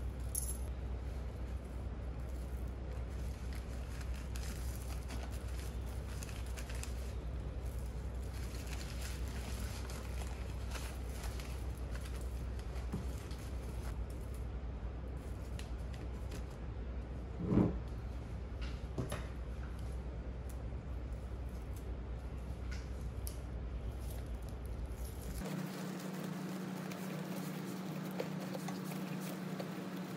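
Faint rustling and small clicks of paper towel and string being handled and tied over the mouths of glass jars, over a steady low hum. One brief louder knock comes a little past the middle, and near the end the hum gives way to a higher steady tone.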